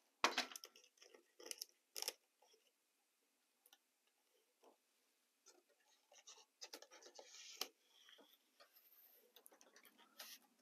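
Faint handling noises as hands fit and press a scenery piece into place on a model railroad layout: scattered light clicks and taps, a few sharper ones in the first two seconds, then a cluster of scuffs and rustles about six to seven and a half seconds in.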